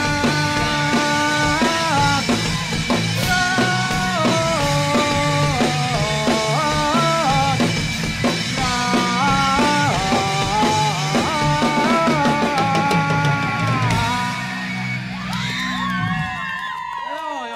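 Live rock band playing the closing instrumental part of a song: drum kit and steady bass under a stepping melody line. The music winds down and drops in loudness about two seconds before the end.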